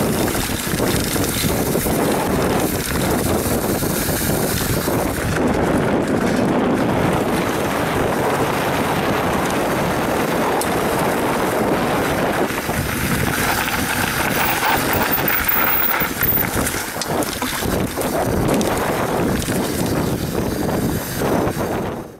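Wind buffeting the on-board camera's microphone, mixed with the tyre and chain rattle of a YT Capra mountain bike riding a dirt trail.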